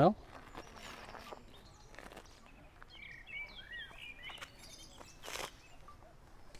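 Quiet outdoor ambience with a bird chirping several times in short rising and falling notes around the middle, and a few soft footsteps on a path.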